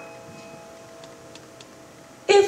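Piano notes fading away softly, with a quiet high note struck at the start and left ringing. A few faint ticks sound through it.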